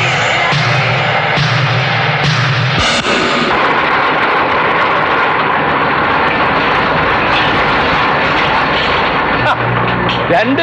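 A loud, continuous engine-like roar from a film's sound-effects track. A low drone runs under it for about the first three seconds, then drops away, leaving a steady rushing noise.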